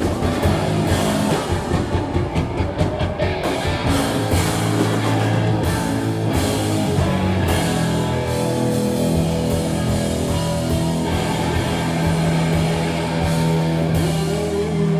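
Live band playing loud rock on electric guitar, bass guitar and drum kit. Fast, dense drumming for about the first three seconds gives way to held, ringing guitar chords over lighter drumming.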